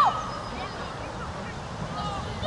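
Young footballers' voices calling across an outdoor pitch: one shout falls away right at the start, then only faint scattered calls over a low rumble of wind on the microphone.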